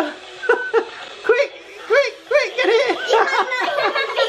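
High-pitched child's laughter: a run of short giggles that come closer together near the end.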